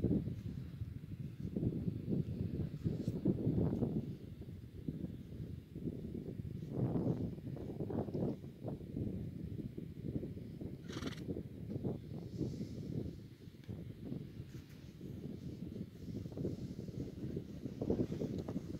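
Horses close by, with a horse whinnying, over a low, uneven rumble that swells and fades throughout.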